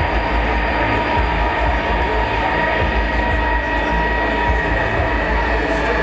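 A live band's sustained droning intro: steady held high tones over a dense rumbling wash, with crowd murmur underneath.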